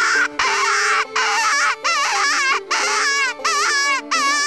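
Mouth-blown predator call imitating a rabbit in distress, blown in a series of about six wavering, high-pitched wailing cries, each about half a second long with short breaks between them, to lure coyotes. Background music plays underneath.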